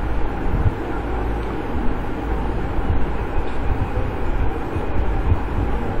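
Steady low rumble with an even hiss over it: background room noise picked up by the microphone, with no distinct events.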